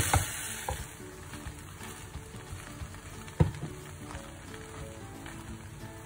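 Silicone spatula stirring and turning cooked rice in a nonstick pan, with a few knocks against the pan, the loudest about three and a half seconds in, over a faint steady sizzle from the pan on the heat.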